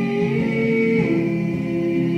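Live music from a stage performance: held chords in close harmony, the chord changing about half a second in and again about a second in.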